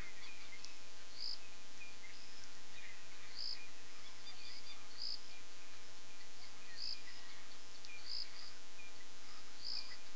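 Evening chorus of insects and birds in the bush: a high chirp repeating every second or two, with scattered smaller chirps between, over a steady faint hum.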